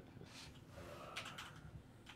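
Faint typing on a computer keyboard: a few scattered key clicks.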